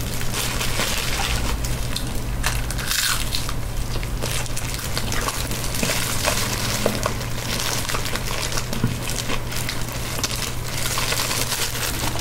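Hands in thin plastic gloves pull apart a crisp fried spring roll, making a continuous dense crackle of many small crisp snaps with glove crinkling, under a low steady hum.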